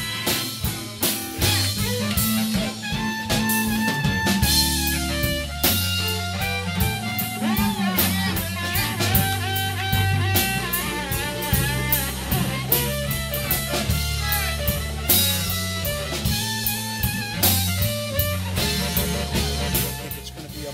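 Blues band playing: guitar lines over a walking bass and a drum kit keeping a steady beat.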